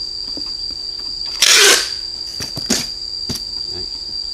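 Packing tape torn off a handheld tape dispenser in one short, loud rasp about a second and a half in, then a few light taps as the strip is pressed onto a cardboard box. A steady high insect drone runs underneath.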